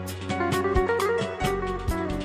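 Electric guitar playing a melody of quick changing notes over a backing of bass and a steady drum beat.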